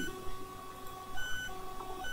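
Faint electronic beeping tones: short high beeps about a second in and again near the end, over softer held notes.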